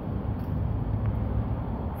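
Steady low background rumble of outdoor ambience, with no distinct knocks or clinks standing out.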